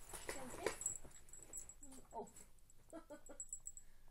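A domestic cat making a few short, soft meows, with small lip-smacking kiss sounds around them.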